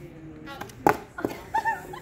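A thrown flying disc strikes the hollow plastic KanJam goal can with one loud, sharp smack about a second in, followed by a softer knock. A short high-pitched exclamation follows near the end.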